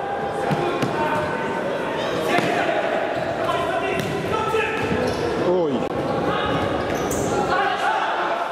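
Futsal ball kicked and bouncing on a wooden hall floor, among players' shouts that echo in a large sports hall.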